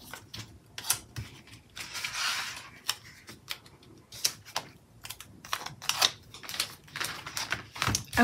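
Paper stickers being handled and pressed onto planner pages: irregular light clicks and taps of fingernails on paper, with a short papery rustle about two seconds in.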